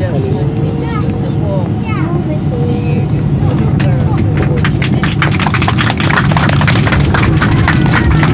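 Airliner cabin noise while taxiing: a steady low rumble of the engines and the rolling aircraft. From about halfway in, a rising patter of many sharp clicks joins it.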